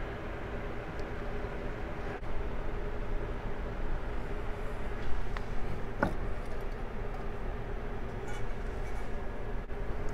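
Steady background hum, with a few faint clicks and a light knock from aluminium engine parts being handled on a workbench, about a second in, twice more near the middle, and once a little after.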